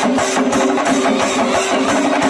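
A brass band and Kerala chenda drums playing together: the brass holds steady notes over fast, dense chenda drumming.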